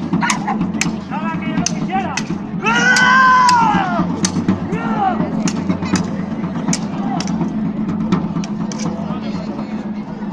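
Sabre blades clashing again and again at an irregular pace, sharp metallic clanks every half second or so. Voices shout over them, with one long, loud shout about three seconds in.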